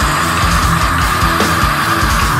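Heavy metal band playing at full volume: sustained guitar over rapid, even bass-drum beats.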